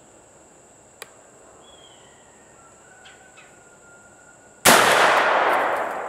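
A single blast from a Stoeger M3500 12-gauge semi-automatic shotgun firing a 3-inch buckshot load, about four and a half seconds in, trailing off over a second or so. Before it there is only quiet outdoor background with one faint click.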